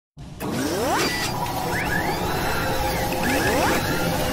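Sound-effect track for an animated logo intro: a steady mechanical whirring bed with rising swooshes about a second in and again near the end.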